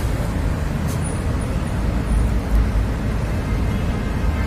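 Steady low rumbling background noise, without distinct knocks, clicks or a regular rhythm.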